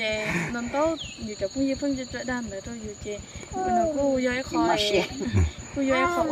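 People talking, mostly women's voices, over a steady high-pitched insect drone.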